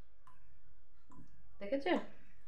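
Two faint short clicks against a quiet room background, then a brief burst of a woman's voice near the end.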